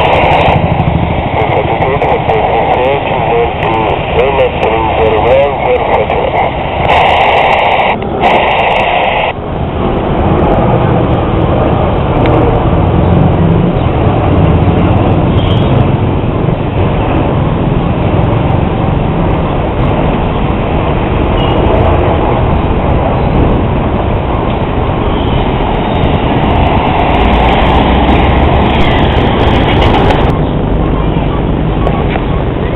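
Passenger airliner flying low overhead: a continuous rumbling roar with a strong low end, over street noise, taking over about nine seconds in after a stretch of voices.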